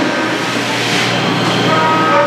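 Steady machine-shop noise of running machinery: a loud, even din with a constant low hum and a few steady whining tones.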